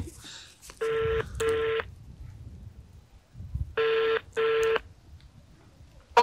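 Ringback tone of an outgoing mobile call heard through the phone's loudspeaker: a double ring-ring, twice, about three seconds apart. The line is ringing and the call has not yet been answered.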